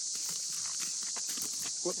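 Steady high-pitched chorus of night insects, with a few faint clicks.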